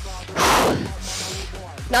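A short, forceful exhale into a close microphone about half a second in, followed by a softer, hissing breath, over quiet background music.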